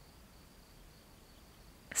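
Quiet pause in a voice recording: faint room hiss with a thin, steady high-pitched whine, then a woman's voice begins a word right at the end.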